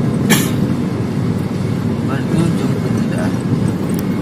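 Steady road and engine noise inside a moving car's cabin, with a sharp click a moment after the start and faint bits of a voice now and then.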